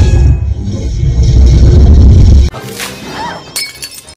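Film sound effect of a lightning-bolt strike, a loud deep rumbling crackle under score music, that cuts off suddenly about two and a half seconds in. Quieter sounds follow, with a short rising-and-falling tone and a high crackle near the end.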